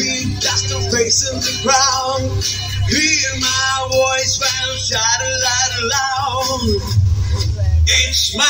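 Amplified live pop-rock music played through a PA: a backing track with a steady bass and a male voice singing over it.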